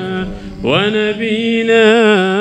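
A man chanting an Arabic salawat, a sung blessing on the Prophet, through a microphone. He holds one long note that breaks off briefly, then slides up into another long, wavering note drawn out without clear words.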